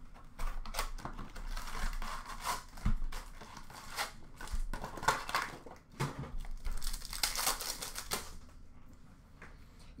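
Cardboard retail box of Upper Deck hockey cards being torn open and its card packs pulled out and ripped open: irregular tearing and crinkling of cardboard and pack wrappers, in several bursts.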